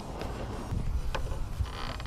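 Low rumble of wind and handling noise on the camera's microphone while the fishing rod is swept up in a hookset, with a few faint sharp clicks.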